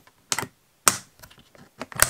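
Metal toggle latches on a record storage case being unclasped: a few sharp metallic clicks and snaps with short pauses between them.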